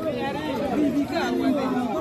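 Speech only: several people talking over one another, with no other distinct sound.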